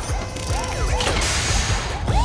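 Cartoon sound effect of a fire truck's ladder extending: mechanical ratcheting and gear sounds, with a hissing whoosh from about a second in.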